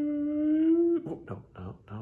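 A man humming one steady held note with his lips closed, the pitch rising slightly. It stops about a second in, followed by a few short vocal sounds.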